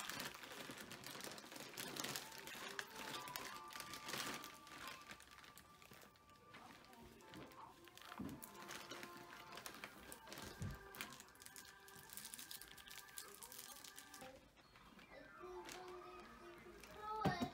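A paddle brush dragging through wet, product-coated hair in repeated short strokes, with faint music playing underneath.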